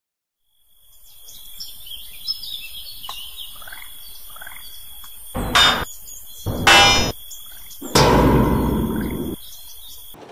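Evening outdoor ambience: birds chirping over a steady high tone that fades in at the start. Three loud bursts of sound break in, about five, six and a half and eight seconds in; the second is pitched, and the last lasts over a second and fades.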